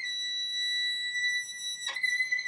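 A 2010 Anthony Lane violin, spruce top and maple back, holding one long, very high bowed note. A brief scratch near the end breaks it, and then the note sounds on.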